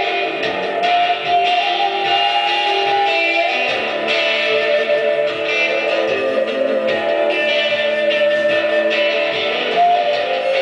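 Native American flute playing a slow melody of long-held, bending notes over strummed guitar chords, with no singing.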